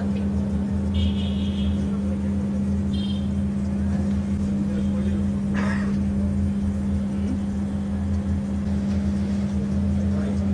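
A steady low hum throughout, with a few brief high chirps about one and three seconds in and a short sharp sound near the middle.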